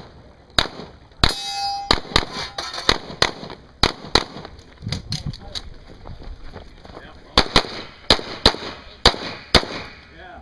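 A string of semi-automatic pistol shots during a practical shooting stage, about fifteen, fired mostly in quick pairs, with a gap of a few seconds near the middle while the shooter moves to a new position. One shot early on is followed by a ringing metallic clang.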